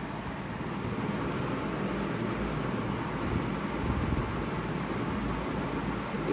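Steady background hiss with a low rumble underneath, even throughout, with no distinct events.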